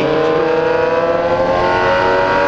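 Yamaha XJ6's 600 cc inline-four engine pulling under throttle, its pitch rising slowly as the bike accelerates, then holding steady.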